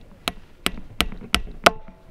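A small hammer striking a nail into a motorcycle's rear tyre: six sharp metallic taps, about three a second, driving the nail into the tread to puncture it.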